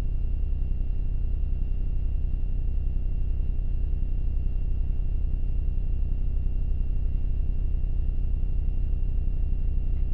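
A steady low droning hum with a thin, high-pitched whine above it, unchanging throughout.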